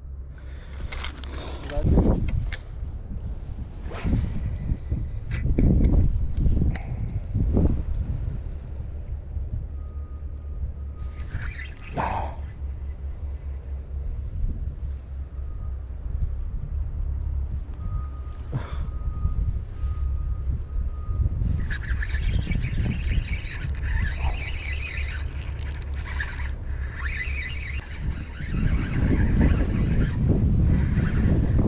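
Wind rumbling on the microphone, with knocks and handling noises from fishing gear. About two-thirds of the way in, a high, rapid chattering sound runs for several seconds.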